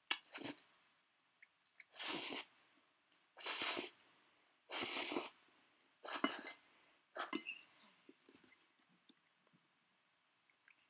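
A person slurping instant noodles off a fork: about six short slurps spaced a second or so apart, stopping a couple of seconds before the end, with faint small clicks after.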